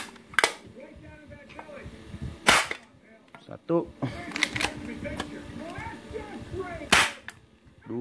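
Spring-powered airsoft pistol (MP900, Beretta-style) fitted with a light 1.1 spring, fired twice at close range into a tin can: two sharp cracks, the first about two and a half seconds in and the second near the end. Smaller clicks of the pistol being worked come before each shot.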